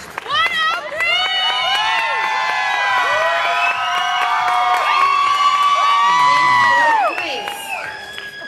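Audience cheering and shouting, many voices yelling at once in long drawn-out calls. The yelling starts about half a second in, stays loud, and falls away about seven seconds in.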